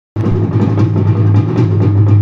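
Music for a stage dance: quick, even drumbeats, about five a second, over a steady low drone, starting abruptly at the very beginning.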